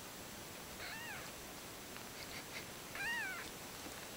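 A kitten meowing twice, two short high meows that rise and fall in pitch about two seconds apart, the second louder.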